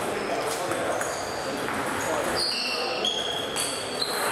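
Table tennis balls clicking on tables and bats in a large hall, over a steady background murmur of voices, with several short high squeaks from about a second in.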